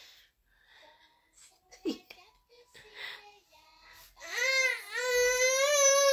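Baby crying: after a few faint sounds, one long, loud, high-pitched wail begins about four seconds in and lasts about two seconds.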